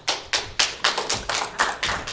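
A few audience members clapping: sparse, irregular claps, several a second, rather than full applause.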